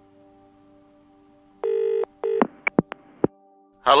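A telephone ringing with one double electronic ring about one and a half seconds in, followed by a few sharp clicks as the handset is picked up. Faint background music plays underneath.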